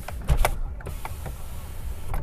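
Fiat Egea front power window being worked from its door switch: a few sharp switch clicks in the first half-second, then the window motor running steadily. The switch is being tried for its two-stage (one-touch) action.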